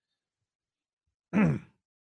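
Silence, then about a second and a half in, one short voiced sigh from a person, falling in pitch.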